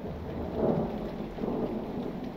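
Rain-and-thunder ambience: a steady hiss of rain with a low rumble that swells about half a second in and again near the end.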